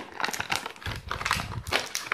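Clear plastic headphone packaging crackling and clicking as hands pull it apart and handle it, a quick irregular run of crinkles and small taps.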